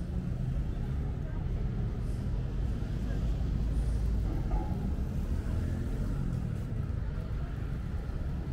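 Street ambience with a car passing close by: a low rumble that swells about halfway through and then fades, with people's voices in the background.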